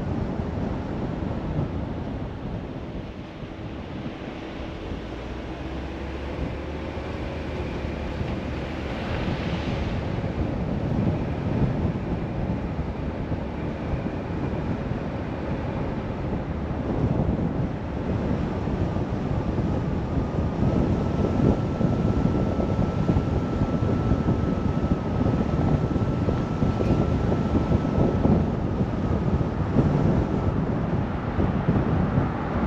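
A car driving along a road: a steady rush of wind on the microphone over tyre and engine noise. It eases a little a few seconds in, then builds again.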